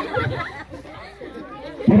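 Audience chatter: several people talking at once, louder in the first half-second, then quieter.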